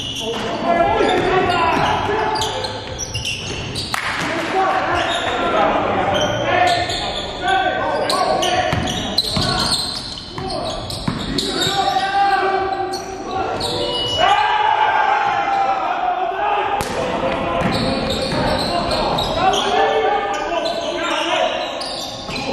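A basketball bouncing on a gym floor during a game, with players' voices echoing in the large hall.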